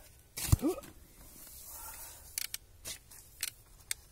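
Steel spade digging in soil around a buried metal safe: a loud short scrape with a bending pitch about half a second in, then several short chops of the blade into dirt and roots.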